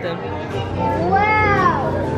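Sheep bleating once, one rising-then-falling call about a second long that starts just under a second in, over background music.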